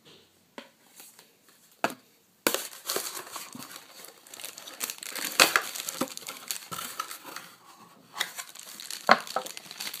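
Clear plastic packaging bags crinkling and crackling as they are handled, starting about two and a half seconds in after a few light clicks, with sharp crackles now and then.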